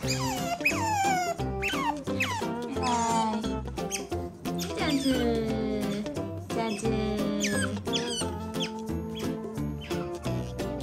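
Asian small-clawed otters squeaking over and over, each high call sliding down in pitch, over background music with held chords.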